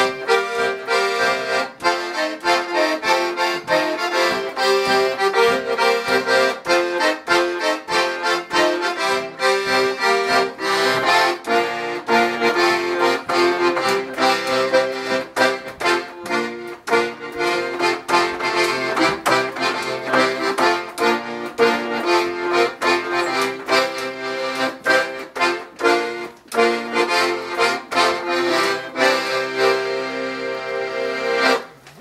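Paolo Soprani piano accordion played solo: a lively tune of quick melody notes over pumped bass chords, with a steady beat.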